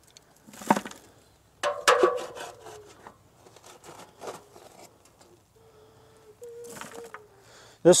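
A small metal ash tool scraping and scooping damp, clumped ash and oil-dry absorbent in a steel fire pit bowl, with a few sharp scrapes and knocks in the first two seconds and softer, scattered scraping after.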